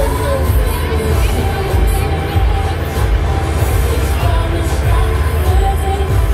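Loud fairground ambience: music with a deep bass mixed with crowd voices and shouts, with no single event standing out.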